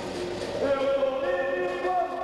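A group of voices singing a capoeira song together, holding long notes and moving to new ones about halfway through.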